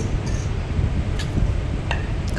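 Steady low rumble of a room fan picked up by the phone microphone, with a few faint light clicks of a steel spoon against a steel plate.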